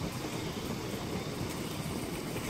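Steady outdoor background noise: a low, unsteady rumble like wind buffeting the microphone, under an even hiss, with no bird calls.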